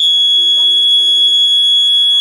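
Loud, steady, high-pitched whistle of public-address microphone feedback: a single unchanging tone that holds throughout, with a faint voice underneath.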